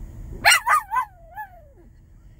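Small dog vocalizing in reply to its owner: a few short yowls about half a second in, running into a long whining cry that falls steadily in pitch.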